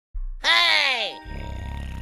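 A cartoon cat's voice: one drawn-out vocal sound sliding down in pitch, followed by a quieter low hum with faint held tones.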